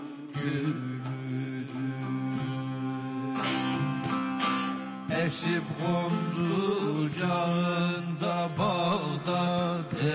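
Turkish folk music (türkü) played live, with plucked and strummed bağlama strings over a sustained low drone.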